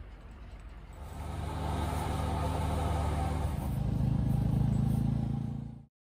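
An engine running steadily, louder from about a second in, then cut off suddenly just before the end.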